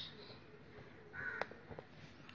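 Ballpoint pen writing on paper, faint strokes with a sharp tap of the pen about a second and a half in, and a short faint call just before it.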